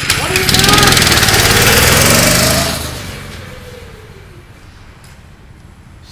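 Go-kart's small engine revving loudly as the kart pulls away, then fading over a few seconds as it drives off.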